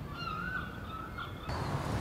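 A bird calling outdoors: one long, slightly wavering call over faint background noise. About one and a half seconds in, the background changes to a louder low rumble.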